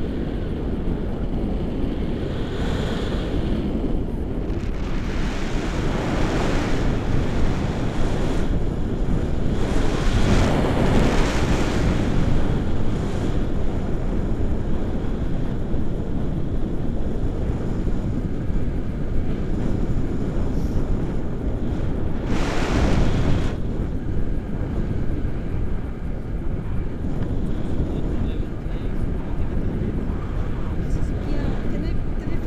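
Wind buffeting a camera microphone in paragliding flight: a steady low rumble of rushing noise that swells in gusts several times.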